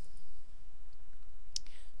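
A single computer mouse click about one and a half seconds in, over steady background noise.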